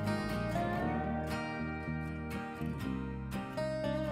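Background music: a plucked acoustic-guitar instrumental with a country feel, with a gliding melody note about half a second in.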